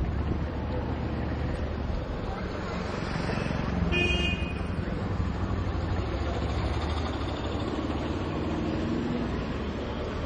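Steady street traffic noise with a low rumble. About four seconds in, a vehicle horn gives one short, high toot.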